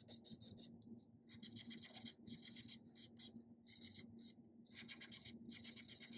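Razor scraper blade scraping soil off a glass-ceramic cooktop in a faint, quick series of short strokes with brief pauses between runs.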